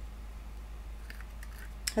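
A few faint metallic clicks and one sharper tick near the end as a handheld paper hole punch is handled and a cardstock edge is worked into its jaws, over a steady low hum.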